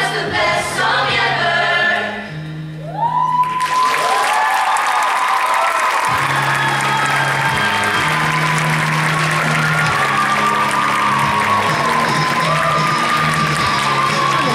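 A show choir sings the last phrase of a pop number over its accompaniment. About three and a half seconds in, the audience suddenly breaks into applause with high-pitched whoops and screams, which run on over the still-playing accompaniment.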